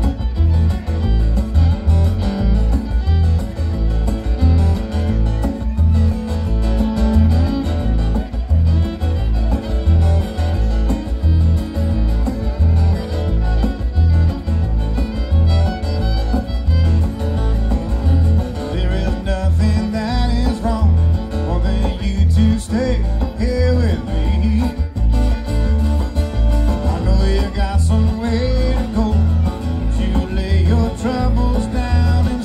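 Live bluegrass-style string band playing an instrumental passage: fiddle over strummed acoustic guitars, with an upright bass keeping a steady pulse underneath.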